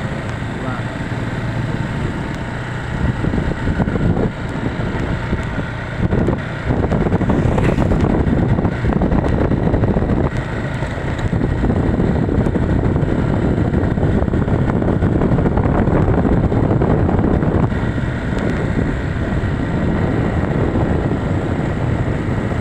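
Wind rushing over the microphone along with the running of a motorcycle engine while riding along a road, getting louder a few seconds in.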